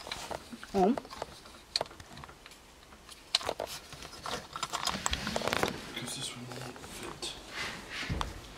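Small plastic clicks and rattles of a vehicle relay housing being worked off by hand, in short irregular bursts.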